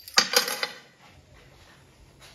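A quick cluster of sharp metallic clinks in the first half-second, then only a low, quiet background.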